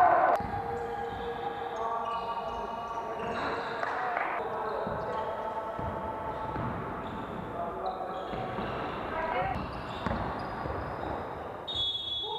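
Game sound from an indoor basketball court: a ball bouncing on the floor, with players' voices calling out across the hall.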